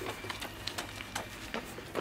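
A runner's footsteps on pavement: light, quick taps about two or three a second, over a faint low hum.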